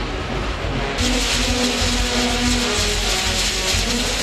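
Fireworks on a burning castillo tower hissing and crackling, the hiss swelling suddenly about a second in, with a brass band holding notes underneath.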